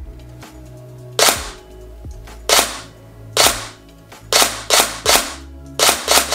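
Tokyo Marui MP5A5 Next Gen Recoil Shock electric airsoft gun firing single shots on semi-auto: seven sharp cracks with the knock of the recoil mechanism. The last three come in quick succession about 0.4 s apart, showing the very quick response of its electronic trigger.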